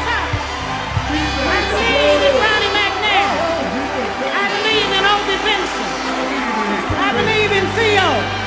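Live soul music: a band playing with held bass notes while a singer's voice slides through long, winding vocal runs.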